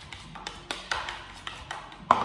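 A spoon clicking and tapping against a bowl as cream is stirred with sweetener, a quick run of light, uneven taps.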